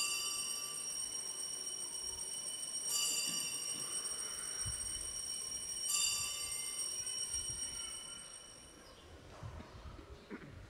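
Altar bell struck three times, about three seconds apart, each clear ring sustaining and fading before the next. It marks the elevation of the chalice at the consecration.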